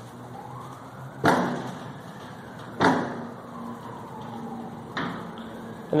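An aircraft's all-moving metal stabilator being worked up and down by hand, clunking three times, each clunk with a short ring.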